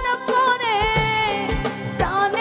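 A woman singing a Bengali folk song with a live band, her voice sliding between long held notes over a drum beat of about two strokes a second.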